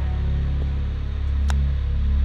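Background film-score music held on a low, steady bass drone, with one short click about one and a half seconds in.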